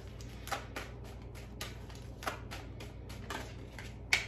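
A deck of tarot cards being shuffled by hand: a run of soft, irregular card clicks and flicks as cards slide and drop from one hand into the other.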